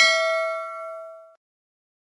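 Notification-bell chime sound effect, a single bell strike ringing out with a few clear tones and fading away about a second and a half in.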